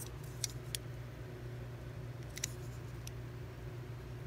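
A few faint, short clicks of a 1950s Gilmark Atomic Moon Rocket hard plastic toy being handled in the fingers, over a steady low hum.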